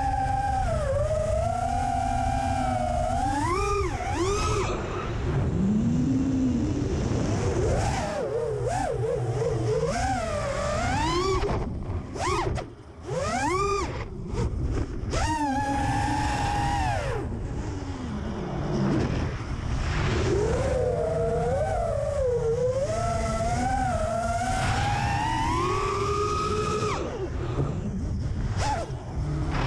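Brushless motors and propellers of an FPV freestyle quadcopter whining, recorded on board, the pitch rising and falling with the throttle through climbs, flips and dives. Steady wind rumble on the microphone runs underneath. The sound briefly drops away about twelve seconds in.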